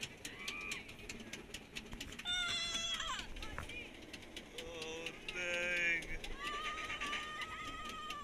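Goliath roller coaster's chain lift climbing, its anti-rollback clicking in rapid, evenly spaced ticks. High-pitched voices of riders call out over it a few times.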